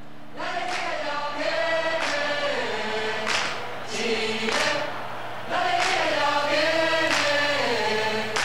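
A group of voices singing together like a choir, in long held phrases that rise and fall, over a steady low hum.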